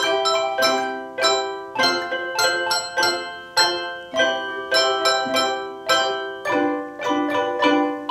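Handbell choir playing a three-octave set of handbells struck with mallets: chords of several bells struck in a march rhythm, about every half to two-thirds of a second. Each chord rings out and fades before the next.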